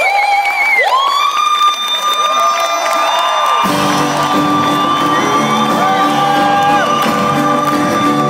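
A woman singing long, high sustained notes with vibrato, sliding up into a note held for several seconds, with no band behind her at first. About three and a half seconds in, the full band joins beneath the voice.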